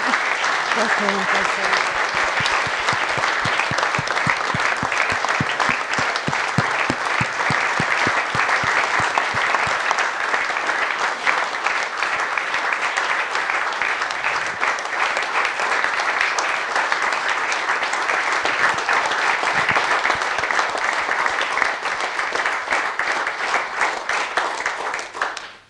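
Audience applauding, a long, steady round of clapping.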